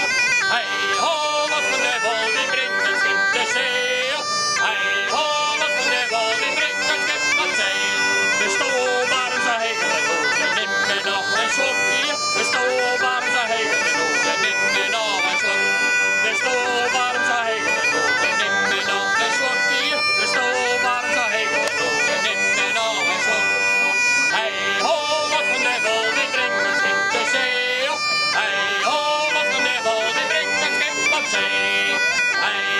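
A diatonic button accordion playing a folk tune in held, reedy chords, with singing at times.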